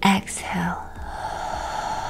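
A short, breathy spoken breathing cue, loudest at the start, then a soft sustained music tone that holds steady from about half a second in.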